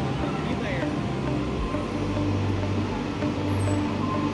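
Transit bus engine running with a steady low hum as the bus pulls in to the curb and stops.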